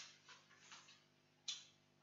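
Near silence with two faint, sharp ticks, one at the start and another about a second and a half later.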